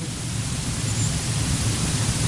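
Steady hiss with a faint low hum under it: the background noise of the recording.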